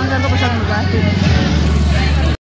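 Voices talking over a steady low rumble of street traffic.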